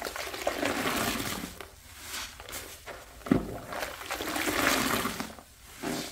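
A large sponge squeezed in gloved hands over a basin of soapy water, the wrung-out water pouring and splashing back into the suds in two long swells. There is a short sharp knock between them.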